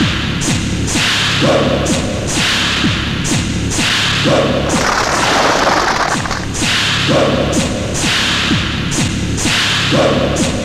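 Film fight sound effects: rapid whooshing swings and punch thuds, one after another, over a driving action music track whose pattern repeats about every three seconds.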